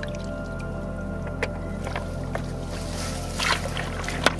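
Background music over water splashing in a shallow muddy channel as a man wades and gropes with his hands. There are a few sharp clicks, and a bigger splash about three and a half seconds in.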